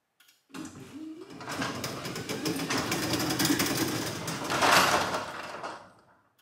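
Genie 6172 wall-mounted jackshaft garage door opener running as it raises a sectional garage door, its motor turning the torsion shaft while the door's rollers rattle along the steel tracks. It starts about half a second in, grows louder toward a peak near the end, then fades and stops just before the end.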